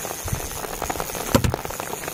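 Heavy rain pattering, with many sharp close taps of drops and one louder knock a little past halfway.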